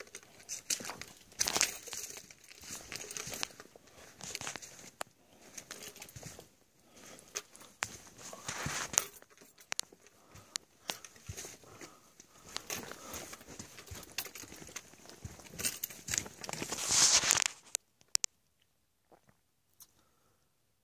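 Footsteps crunching on a gritty sand-and-gravel dirt trail, mixed with rustling, in irregular bursts with many small sharp clicks. They stop suddenly about two seconds before the end.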